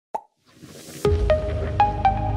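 Logo intro jingle: a short pop, then a swell rising for about half a second, then a deep hit about a second in, followed by bright plucked notes over a held bass tone.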